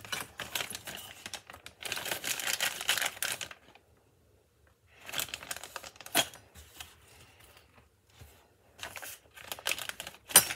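Clear plastic piping bag crinkling while a wooden craft stick scrapes and taps thick spackle out of a plastic tub into it. The rustling breaks off for about a second and a half a little before the middle, and there is one sharp tap about six seconds in.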